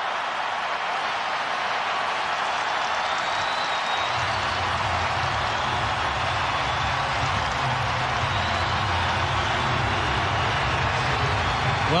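Stadium crowd cheering steadily after a goal. A deeper hum joins about four seconds in.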